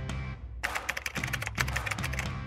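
Rapid computer-keyboard typing clicks, starting a little over half a second in, over steady background music.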